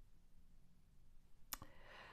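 Near silence, then a single sharp click about one and a half seconds in, followed by a brief rustle, as a hand reaches to the deck of cards.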